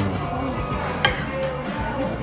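Background music playing, with a single sharp clink about a second in as a metal spoon strikes a ceramic dessert plate.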